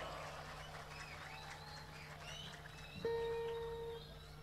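Faint lull over a live stage's sound system: a low steady hum with scattered short chirps, then about three seconds in a single steady pitched tone starts suddenly and is held.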